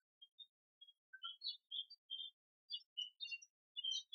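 Faint, scattered high-pitched chirps of birds in the background, starting about a second in.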